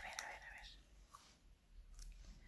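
Near silence, opening with a brief faint whisper from the woman in the first moment, then a couple of faint small clicks.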